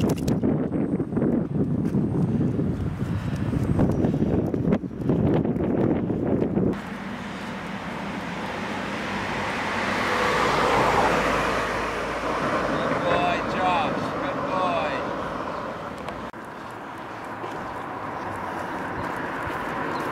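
Wind rumbling on the microphone for the first several seconds. After an abrupt change, a car passes on the street, its road noise swelling to a peak and fading away. A few short high chirps follow.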